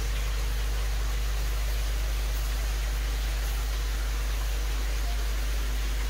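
Steady mechanical hum, deep and unchanging, under an even hiss.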